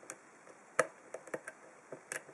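Small sharp metallic clicks of a steel hook pick working the pin tumblers of a 40 mm Coral five-pin padlock under heavy tension. There are about half a dozen clicks at irregular intervals, the loudest a little under a second in.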